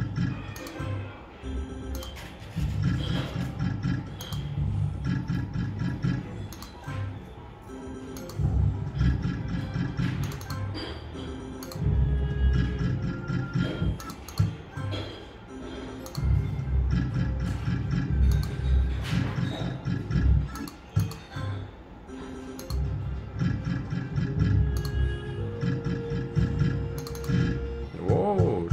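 Book of Ra Classic slot machine's electronic game sounds through a run of free spins. The reel-spinning sound repeats every few seconds, with sharp clicks as the reels stop and short electronic tones and jingles between spins.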